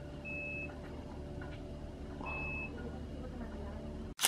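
A high electronic beep sounds twice, about two seconds apart, each lasting under half a second, over a low, steady engine-like hum.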